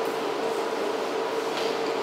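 Steady room noise with a faint constant hum.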